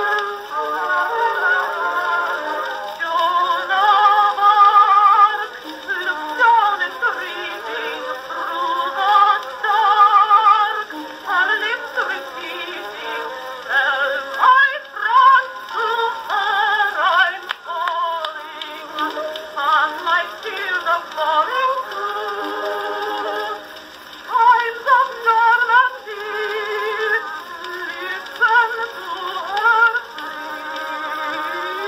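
An Edison Blue Amberol cylinder playing on a 1914 Edison Amberola DX acoustic phonograph: a woman singing with accompaniment. Her voice wavers with vibrato, and the sound is thin, with no bass.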